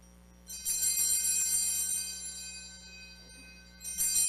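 Altar bells rung twice at the elevation of the chalice, signalling the consecration: a bright ring about half a second in that slowly fades, then a second ring near the end.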